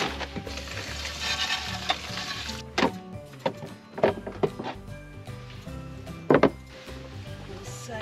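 Dry bracken fern crackling and rustling against a plastic bag as it is lifted out, then a handful of sharp knocks of containers being set down on a counter, the loudest near the end. Background music plays throughout.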